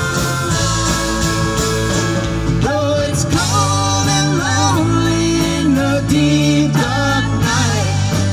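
Live rock band playing with bass and electric guitar, a steady bass line underneath and sung notes that slide and hold from about a third of the way in.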